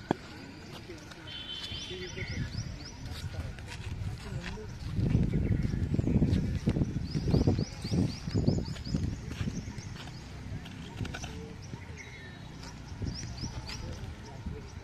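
Outdoor ambience with birds giving runs of quick, high rising chirps several times. A louder low rumble runs through the middle, and there is a sharp click at the very start.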